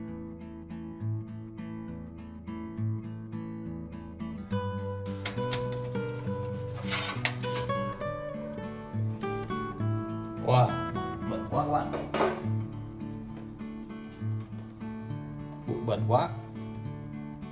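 Acoustic guitar background music with a steady strummed pattern. Over it come a few short bursts of metallic clatter, about five to seven seconds in and again around ten to twelve seconds, as the sheet-metal cover of an amplifier is handled and lifted off.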